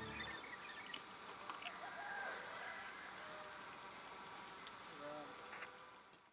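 Faint evening outdoor ambience: a steady high insect chirring with a few short bird-like chirps and calls scattered through.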